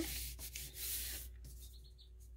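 A hand rubbing and pressing down a folded, freshly glued book page: a dry papery rubbing for about the first second, then fading away.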